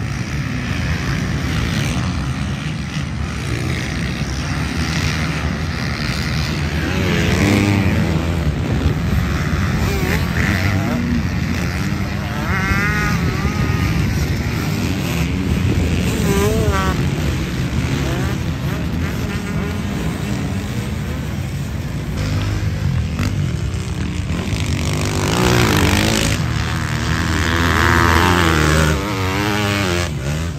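Several motocross bikes racing on a sand track, their engines revving up and down as they pass and overlapping one another.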